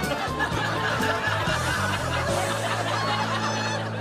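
Upbeat comedy background music with people laughing and chuckling over it.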